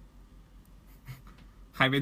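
Quiet room tone with a steady low hum and a few faint soft rustles; a man starts speaking near the end.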